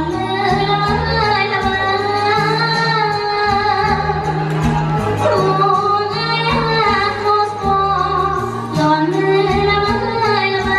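A woman singing a song into a microphone, her voice gliding and wavering over instrumental backing with a bass line that changes note about once a second and light cymbal ticks.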